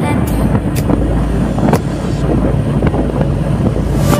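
A motorcycle running at steady road speed, with a low rumble and wind on the microphone, under background music with a drum beat.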